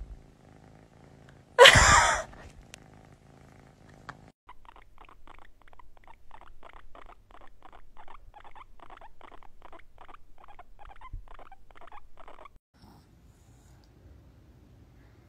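A kitten purring, broken about two seconds in by one brief loud vocal burst. Then a guinea pig being stroked makes a quick, regular series of short purring chirps, about three a second, for roughly eight seconds.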